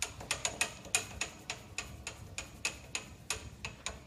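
Metal lathe handle being cranked by hand, giving a series of sharp metallic clicks, about four or five a second and slightly uneven.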